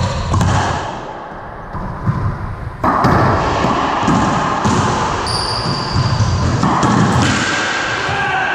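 Racquetball rally: the hollow rubber ball is struck by racquets and smacks off the court walls and floor, several sharp impacts with echo from the enclosed court. A brief high squeak comes about five seconds in.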